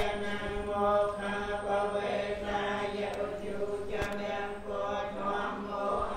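Theravada Buddhist chanting: voices intoning in long, evenly held tones that step slowly in pitch, without pause.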